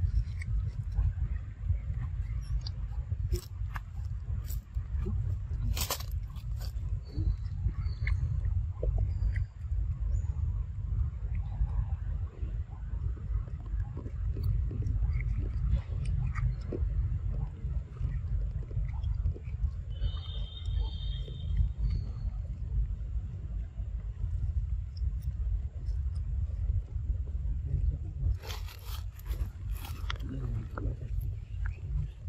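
A macaque eating ripe mango: scattered small wet clicks and smacks of chewing over a steady low rumble. There is a brief high-pitched squeak about two-thirds of the way through and a short hissy burst near the end.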